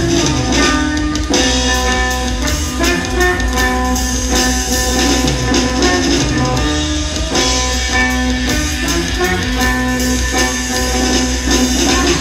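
Instrumental live duo of a ukulele played through an effects pedal chain and a drum kit. Held, layered ukulele notes ring over steady drumming.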